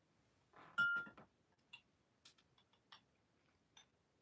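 A drinking glass clinks once about a second in, ringing briefly, followed by a few faint ticks.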